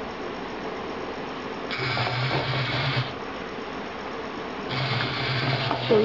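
Small DC gear motors of a DTMF phone-controlled robot car driving its wheels forward in two short runs of a little over a second each, about three seconds apart.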